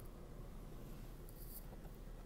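Quiet car-cabin room tone with faint scratchy rustling from handling.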